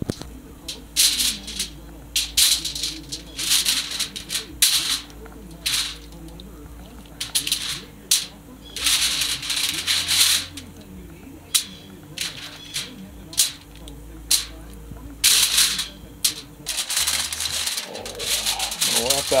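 Aluminum foil crinkling and rustling in irregular bursts as it is handled and catfish chunks and chopped vegetables are laid onto it, with a faint steady hum underneath.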